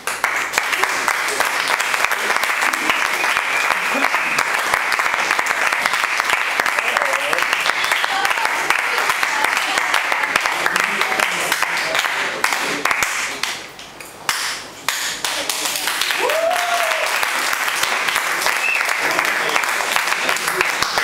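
Audience applauding: a dense, steady clatter of many hands clapping. It dies down for a moment about two-thirds of the way through, then picks up again, with a voice calling out over it.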